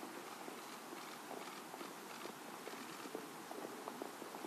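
Faint footsteps on stone paving: irregular light clicks over a steady outdoor hush.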